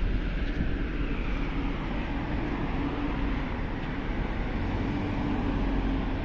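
Steady outdoor street noise: a continuous low rumble of traffic and wind on the microphone. It swells slightly about two thirds of the way through.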